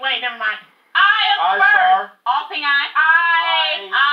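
People's voices calling out, in bursts with short breaks, ending in one long drawn-out call in the second half.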